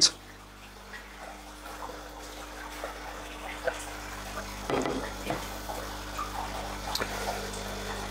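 Water moving and trickling in a large aquarium over a steady low pump hum, with a few faint splashes.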